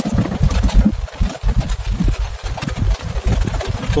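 Low, uneven rumble inside a vehicle's cab as it drives slowly over a rough, muddy road, with rain hitting the windshield.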